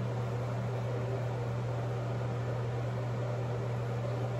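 A steady low hum with an even hiss over it, unchanging throughout: room tone.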